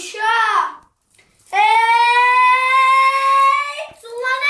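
A boy's voice finishing a short chanted phrase, then holding one long drawn-out note for over two seconds, its pitch rising slightly near the end.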